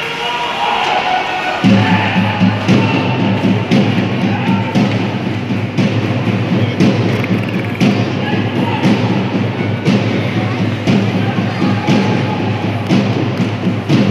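Ice rink arena din during play, with many thumps throughout. A steady low drone, musical or chant-like, sets in about two seconds in.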